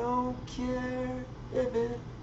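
A man singing over an acoustic guitar: two sung phrases, the first with a held note, with the guitar ringing underneath.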